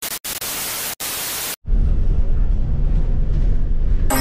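Television static hiss used as a video transition, cutting out twice for an instant and stopping suddenly after about a second and a half. It gives way to a louder, steady low rumble of a double-decker bus heard from inside while riding.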